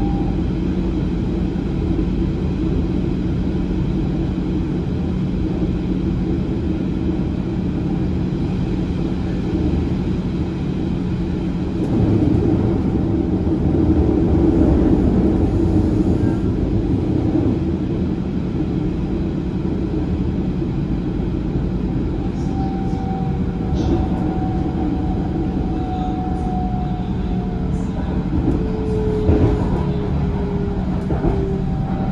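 Passenger rail car running along the track, heard from inside: steady rumble of wheels and running gear, louder for a few seconds after about twelve seconds in. In the second half a faint whine comes in and slides lower in pitch near the end.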